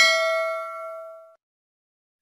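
A single bell-like ding, the notification-bell sound effect of a subscribe-button animation, ringing and dying away before it cuts off about a second and a half in.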